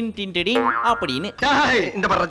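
Speech from a film clip, with music underneath.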